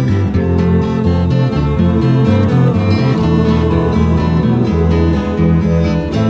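Instrumental passage of a folk-rock song: acoustic guitars picking over a moving bass line, with no singing.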